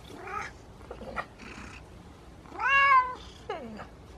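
A cat meowing: a faint short call just after the start, then a loud drawn-out meow about two and a half seconds in, followed at once by a shorter meow that falls in pitch.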